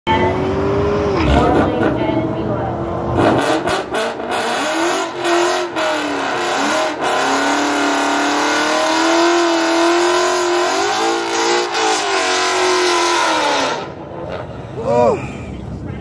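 The 5.0 L Coyote V8 of a manual 2017 Ford Mustang GT with full bolt-ons, loud and sustained as it revs at the start line and launches down the drag strip. Its pitch rises and falls with the revs and gear changes, and it fades away about fourteen seconds in.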